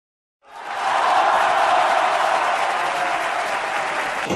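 Steady crowd applause, fading in about half a second in and then holding even.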